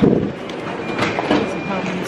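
Background hubbub of a busy fast-food restaurant: a steady murmur of noise with faint voices in the distance.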